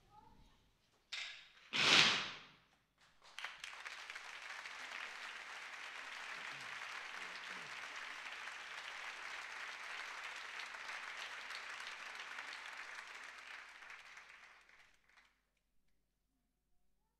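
A loud, sharp burst about two seconds in, then audience applause that runs for about eleven seconds and fades out near the end.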